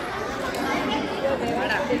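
Many people chattering at once, a steady babble of overlapping voices at a meal table.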